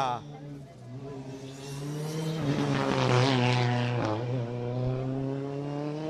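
Skoda Fabia N5 rally car's engine pulling hard through a turn and accelerating away. Its note climbs and grows louder over the first three seconds, dips briefly about four seconds in, then holds steady.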